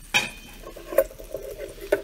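A stainless-steel pan lid set down on the stovetop with a short metallic clank and brief ring, then a frying pan's juices sizzling and bubbling softly around a burger patty, with a sharp tick about a second in.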